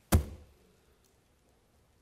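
A single sharp knock on the wooden pulpit, dying away within a fraction of a second.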